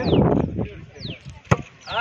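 A football kicked off: a dull thump near the start, then a single sharp knock about a second and a half in. A bird's short falling whistle repeats through it.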